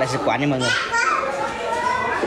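Speech only: people's voices, one of them high-pitched.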